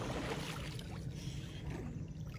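Lake water splashing and sloshing as a man is dipped under and lifted back up in a baptism by immersion, with some wind on the microphone.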